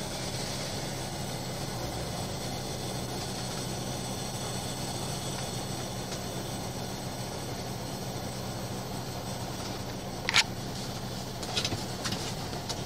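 Steady traffic noise with a low engine hum, broken by a sharp knock about ten seconds in and a few lighter clicks near the end.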